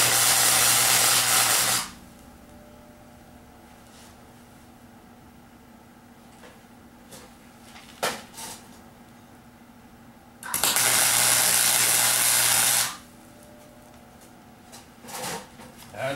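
Arc welder tacking small steel tabs onto a steel tray: two crackling, buzzing tack welds, each about two seconds long and about ten seconds apart. A few faint clicks of handling fall between them.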